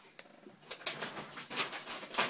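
Plastic packaging and shopping bags rustling and crinkling in short scattered bursts as items are rummaged through by hand.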